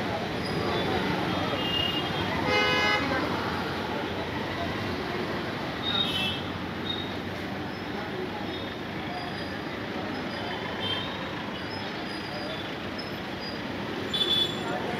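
Street traffic noise with a vehicle horn sounding once, briefly, about two and a half seconds in.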